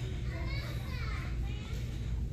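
Faint, distant children's voices chattering in a large store, over a steady low hum.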